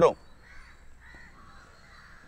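Crows cawing faintly, a few short calls spread through a pause in speech.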